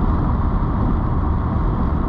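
Steady low rumble of a 1988 Mercedes-Benz 560SL's V8 engine and road noise, heard from inside the cabin while the car drives along at an even pace.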